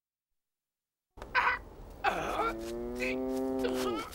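An ox lowing: one long moo of about two seconds, rising at the start and dropping away at the end. It follows a short, rough burst of sound just over a second in.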